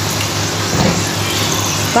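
French fries deep-frying in hot oil, a steady sizzle, with a low steady hum underneath.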